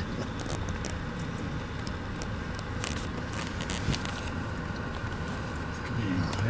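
Steady low rumble of a car engine running, heard from inside the car, with scattered light clicks and taps over it.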